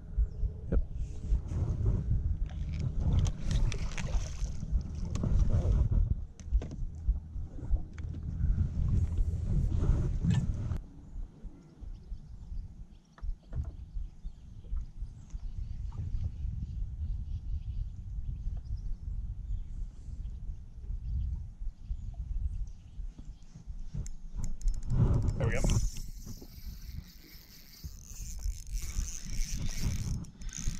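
Irregular low rumble of water lapping against a fishing boat's hull, heavier for the first ten seconds or so and then quieter. Near the end comes a louder burst, followed by a thin hiss as a spinning reel is worked.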